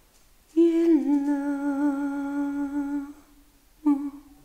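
A person's voice humming one long held note: it dips slightly in pitch at the start, then holds steady with a slight wobble for about two and a half seconds. A short second hummed note begins just before the end.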